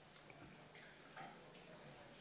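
Near silence: faint room tone of a recorded discussion, with a low steady hum and a few faint small clicks.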